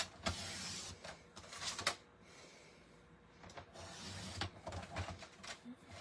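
Paper trimmer's sliding blade run along its rail, cutting through a sheet of cardstock. One sliding pass comes near the start and another at about four seconds, with a few sharp clicks of the cutting head and the paper being handled.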